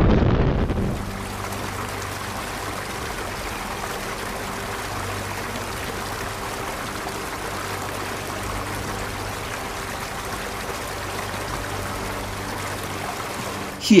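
A low rumble that fades away within the first second, then a steady rush of flowing water with a faint low hum beneath it.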